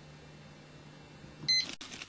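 A low steady hum, then one short, loud electronic beep about one and a half seconds in, followed by a brief dropout in the sound.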